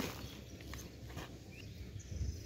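A metal digging blade cutting into wet clay mud and clods of soil being lifted and dropped, giving a run of dull knocks over a low rumble. A short high chirp comes near the end.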